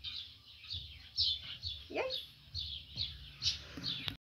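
Small birds chirping over and over: short high chirps, two or three a second, with one lower rising-and-falling call about two seconds in. Soft low thumps underneath.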